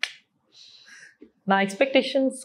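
A single sharp finger snap, followed by a faint breathy hiss, before speech resumes about one and a half seconds in.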